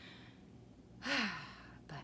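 A woman lets out one loud, breathy sigh about a second in, her voice dropping in pitch as she exhales. It is a nervous sigh after saying her heart is racing.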